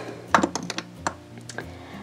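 Small plastic clicks and taps: a lip gloss tube being slotted back into a clear acrylic organizer and knocking against it. A quick run of sharp clicks comes in the first second, then a few fainter taps.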